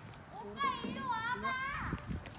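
A young child's high-pitched voice calling out in long, wavering tones from about half a second in.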